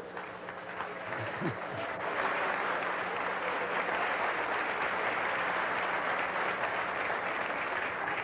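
Theatre audience applauding at the end of a comedy sketch, swelling after about two seconds into steady applause.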